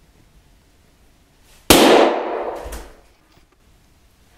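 A single yellow latex balloon bursting with one sharp bang about halfway through, followed by an echo that rings on for about a second in the bare room.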